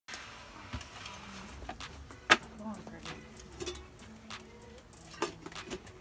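Wooden bee package box being handled against the hive top: scattered knocks and clicks, the sharpest one about two seconds in and another about five seconds in.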